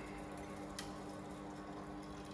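Desktop filament extrusion line running: a steady electric motor hum with several even tones, and one faint click a little under a second in.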